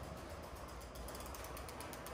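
Freewheel of a fat-tire electric bike ticking rapidly and evenly as it coasts close by.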